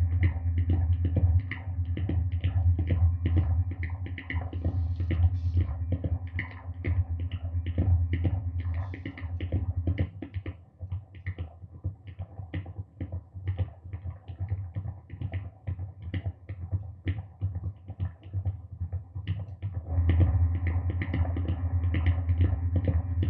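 Self-sustaining audio feedback loop, headset feedback run through a pitch shifter, pitch bender, slow tremolo and bass distortion into a mixer, producing a low droning hum under a rapid crackle of clicks. About halfway through the low drone falls away, leaving thinner clicking, and it swells back in near the end.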